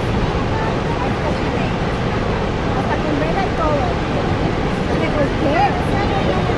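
Niagara's Horseshoe Falls pouring steadily, a dense, even rush of falling water, with faint voices of people talking underneath.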